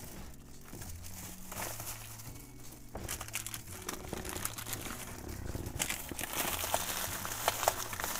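Crinkling and rustling of something being handled close to the microphone, sparse at first and busier from about the middle, with a few sharper crackles near the end.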